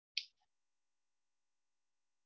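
Near silence, broken once shortly after the start by a single short, sharp, high-pitched sound like a snap or sibilant click.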